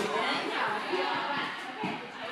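Indistinct background chatter of several voices overlapping, with no clear words.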